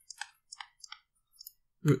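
Stylus tapping and ticking on a tablet surface as a word is handwritten: a string of short, light, irregular clicks.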